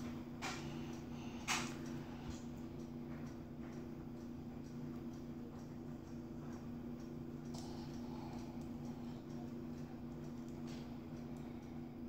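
Aluminium foil softly crinkling and crackling in a child's fingers as a small foil-wrapped item is picked open, in a few faint, brief crackles, over a steady low hum.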